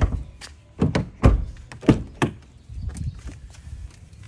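About six knocks and thumps over two and a half seconds, the loudest a little over a second in: footsteps beside the car and its front door being opened.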